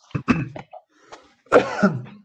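A person clearing their throat with short coughs: a brief burst at the start and a louder one about one and a half seconds in.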